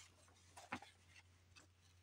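Near silence, with a couple of faint soft ticks from a printed sheet of paper being handled in gloved hands.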